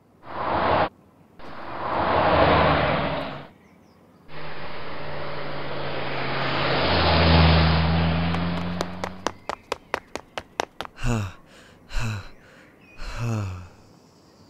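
Car sound effect for a toy car: after two short rushes of noise, an engine runs with a low steady hum, swelling to its loudest about seven and a half seconds in and then fading as it drives away. A quick run of sharp clicks follows, then a few short vocal sounds near the end.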